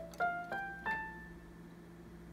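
Casio CTK-3200 electronic keyboard playing the top of an ascending A minor scale on the white keys: three single notes stepping up, about a third of a second apart, in the first second. The last, highest note of the scale rings on and fades away.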